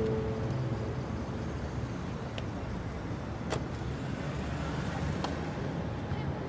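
Street traffic with a car driving by, its engine and tyres a steady low rumble, and a few brief sharp clicks near the middle.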